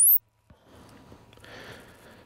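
The top end of a rising sine sweep, an audio-measurement test signal, climbing to a very high pitch and cutting off suddenly just after the start. Then only faint room tone with a low hum.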